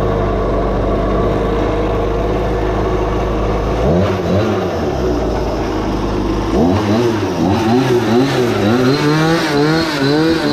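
The go-kart's small gas engine running at a steady idle, revved up and back once about four seconds in. It settles again briefly, then from about six and a half seconds it is revved up and down over and over, the pitch rising and falling roughly every half second.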